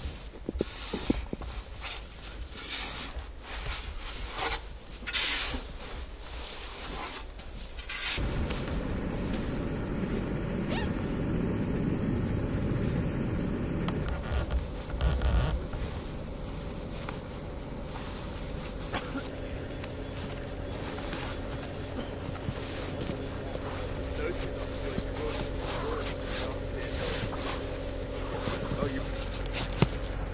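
Snow shovel scraping into and tossing snow in repeated, irregular strokes. About eight seconds in, a steady low hum with a faint steady tone takes over.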